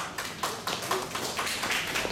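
Light applause from a small audience, with individual hand claps heard as many quick sharp slaps.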